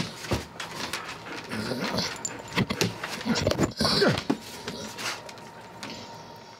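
A dog whining in several short cries that rise and fall, with sniffing and snuffling close to the microphone.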